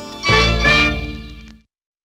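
Andean folk band with harp and violins striking a final chord about a third of a second in, which fades and stops before the halfway-to-two-seconds mark is long past, ending the song.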